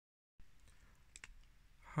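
Dead silence at the very start, then quiet room tone with two faint clicks a little over a second in. A man's voice begins right at the end.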